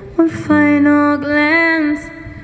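A young woman's singing voice with an acoustic guitar. She comes in just after a short pause, then holds one long note that lifts in pitch near the end.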